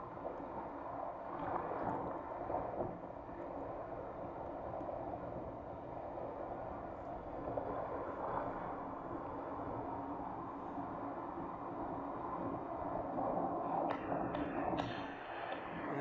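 Water rushing and sloshing steadily along a water slide flume as a rider slides down, heard with a dull, muffled tone. Splashing grows louder near the end as the rider reaches the pool.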